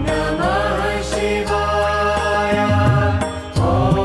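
Devotional music: a voice chanting over a steady low drone and accompaniment.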